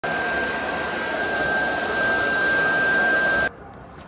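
Handheld hair dryer blowing steadily with a constant high whine, switched off abruptly about three and a half seconds in.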